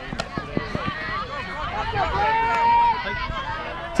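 Overlapping voices of players calling out across an ultimate frisbee field, with one longer drawn-out call in the middle. A few sharp taps come in the first second.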